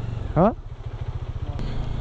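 Motorcycle engine running at low speed, its firing pulses a steady low beat, with a short rising voice-like call about half a second in.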